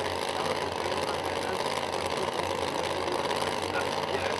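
Drag-radial race car engines idling steadily at the starting line.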